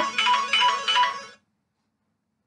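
A phone ringtone melody of short repeated tones plays and cuts off abruptly about one and a half seconds in.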